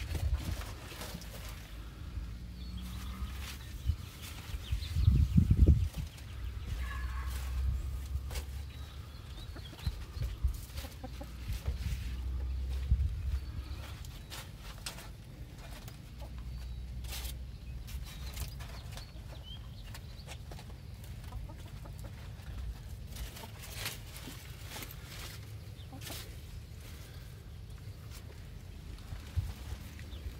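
Chickens clucking in the background, with rustling, scraping and knocks as someone climbs about in a plastic window well; a louder bump comes about five seconds in.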